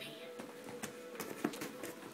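Faint, irregular soft taps and rustles of a dog moving about on a cushioned couch, over a faint steady tone.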